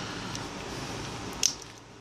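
Handling noise of a partly disassembled smartphone being gripped and lifted off a rubber work mat, with one sharp click about one and a half seconds in.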